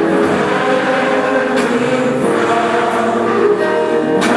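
Gospel music with a choir singing, steady and loud.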